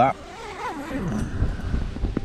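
Tent door zip being pulled shut, a rasp over a steady low rumble of wind on the microphone.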